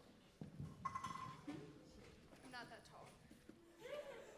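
Hushed audience in a hall between performances: near-quiet room with a few faint, brief voice-like sounds.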